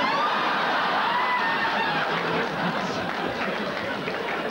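Studio audience laughing: a big laugh breaks out all at once and carries on, easing a little near the end.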